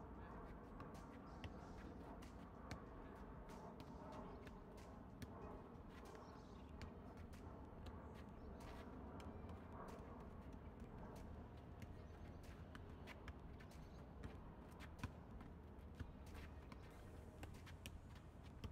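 A football being passed back and forth with two-touch play: irregular short knocks of foot on ball, a couple of them louder near the end, over a low steady background hum.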